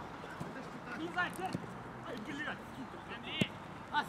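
Players calling and shouting to one another across a football pitch, with a couple of sharp ball kicks, the louder one about three and a half seconds in.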